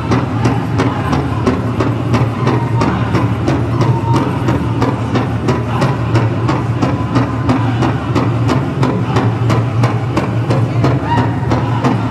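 Powwow drum group singing a jingle dress song while pounding a large shared bass drum in a steady, even beat, with high wavering voices over it. The metal cones on the dancers' jingle dresses rattle along with the beat.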